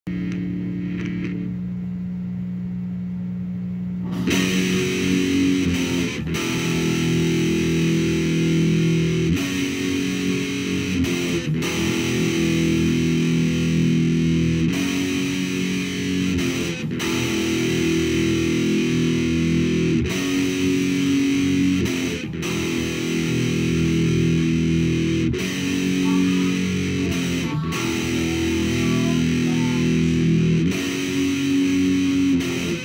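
Heavily distorted electric guitar, a black SG-style solid-body, playing a slow riff of held chords. It opens with a low note ringing for about four seconds, then the louder full riff comes in, changing chord every second or two.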